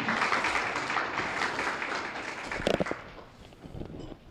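Audience applauding, dying away about three seconds in, with a brief knock near the end.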